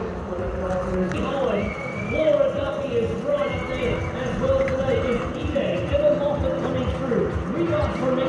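Continuous speech that the transcript does not make out into words, over steady outdoor background noise.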